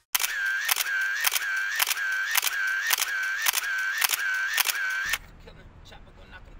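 An intro sound effect: a sharp click with a short, slightly bending tone, repeated evenly about twice a second some nine times, then cutting off suddenly about five seconds in and leaving a faint low hum.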